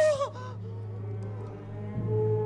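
The end of a woman's frightened stage scream, a loud wavering cry that breaks off within the first half second. A low steady hum remains.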